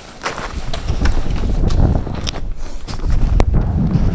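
Wind buffeting a camera microphone, a low rumble that swells about a second in, with a few scattered sharp clicks and rustles.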